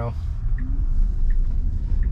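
Low road and tyre rumble inside the cabin of an electric Tesla Model Y as it accelerates from a near stop through a left turn, growing louder as speed builds.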